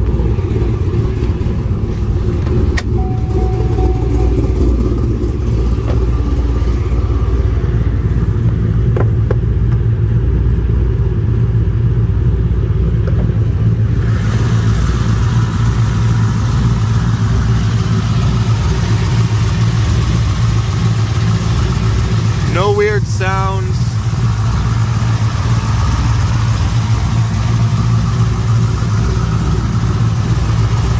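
The 2010 Camaro SS's 6.2-litre LS3 V8 idling steadily. About 14 s in, more hiss comes in over the idle.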